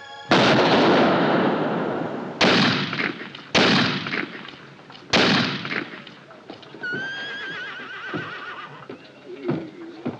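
Four revolver shots, one to two seconds apart, each with a long echoing tail. A horse whinnies about seven seconds in.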